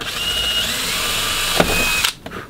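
Cordless drill with a small bit running steadily, drilling a starter hole into a fiberglass costume torso, with a faint high whine. It cuts off at the end.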